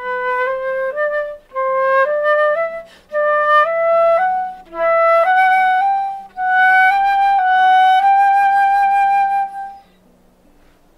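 Flute playing a slow, slurred tone exercise: short phrases that climb step by step, with quick breaths between them, rising through upper F-sharp to a long held upper G that stops near the end.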